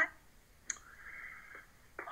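A single sharp click about two-thirds of a second in, followed by a faint, even hiss-like sound for about a second, heard through a tablet's speaker.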